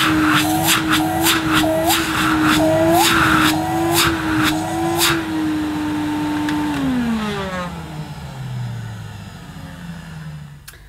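Electrolux 305 cylinder vacuum cleaner running while its suction inlet is blocked and unblocked by hand over and over: each opening gives a short rush of air, and the motor note wavers with the changing airflow. Near the end the motor winds down, its pitch falling steadily as it slows.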